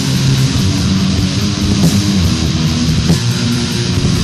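Death/doom metal demo recording: heavily distorted electric guitars and bass playing a low riff over drums, with a couple of sharp drum or cymbal hits.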